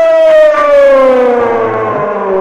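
A man's singing voice holding one long note that slides slowly down in pitch, the drawn-out final note of a devotional song. A few sharp percussion strokes sound in the first moment.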